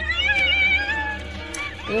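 Horror film soundtrack: music with high, wavering, cry-like sounds in the first second, over a steady low drone.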